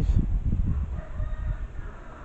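A rooster crowing faintly: one long, drawn-out call starting about half a second in. Low rumbling noise on the microphone underneath, strongest at the start.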